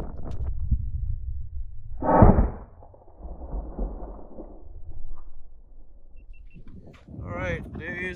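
Slowed-down sound of a .308 rifle shot hitting a ballistic gel block: one loud, drawn-out whooshing boom about two seconds in, then a softer rumbling tail.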